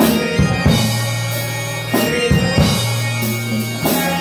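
Live church choir singing a hymn with band accompaniment: congas and drum kit beating time over a sustained electric bass line.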